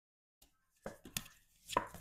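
Three sharp taps of a deck of oracle cards being handled and knocked together in the hands, starting about a second in after a moment of silence.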